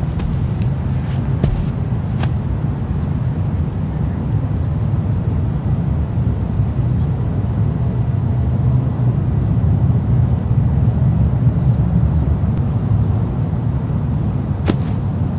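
Steady low rumbling noise, with a few faint clicks in the first two seconds.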